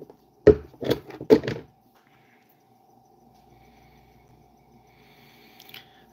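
Handling noise: four sharp knocks or clicks in the first second and a half, then a faint steady hum.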